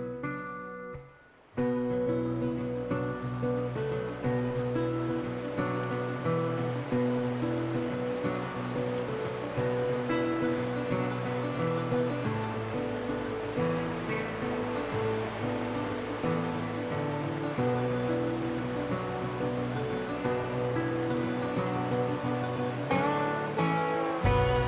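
Background music with plucked guitar-like notes. It fades almost out about a second in, and a new passage starts a moment later and runs on steadily.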